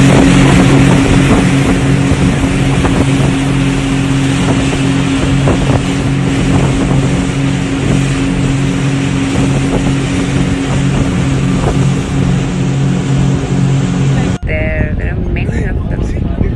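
Motorboat running steadily at speed, its engine hum under the rushing of the wake spray and wind buffeting the microphone. The sound cuts off abruptly near the end.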